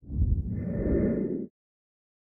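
A short snippet of the Dynapac CP27 roller's diesel engine running close up: a low, pulsing rumble that cuts in abruptly and cuts off just as suddenly after about a second and a half.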